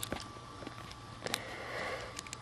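Quiet handling of a plastic Lumino Dragonoid Bakugan toy in the hands: a few small clicks over a low steady hiss.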